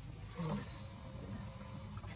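Faint, high-pitched squeaks from an infant macaque in short broken calls during the first half second, with a brief low soft sound about half a second in.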